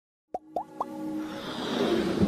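Intro sound effects for an animated logo: three quick rising plops about a quarter second apart, then a swelling whoosh that builds under electronic music.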